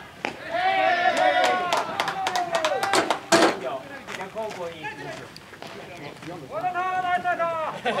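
Ballplayers shouting and calling out across the field in long, drawn-out calls, with a run of sharp claps in the middle and one loud sharp knock about three and a half seconds in.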